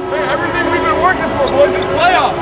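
Men's voices shouting and calling out on an indoor volleyball court, with court noise from players moving on the hardwood floor.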